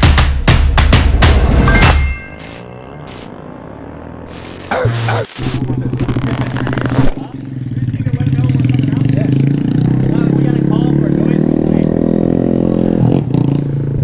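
Intro music with drum hits for about two seconds, then a Honda Grom's single-cylinder 125 cc engine running with its stock exhaust, a steady drone that comes in about five seconds in and creeps up slightly in pitch before easing near the end.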